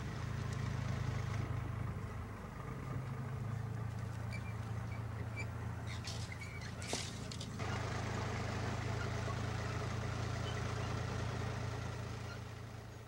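A steady low hum with a few faint high chirps midway and a single brief click about seven seconds in.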